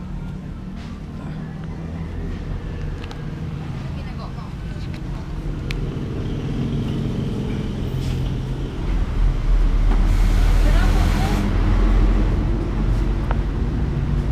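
Road traffic with engines running close by; the sound builds and is loudest as a vehicle passes about ten seconds in.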